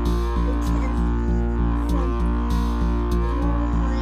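Background music with a steady, regular beat and deep bass under sustained melodic lines.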